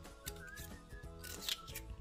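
Background music with held notes, over small clicks and scrapes of a paring knife working into a Manila clam's shell to pry it open; the sharpest click comes about one and a half seconds in.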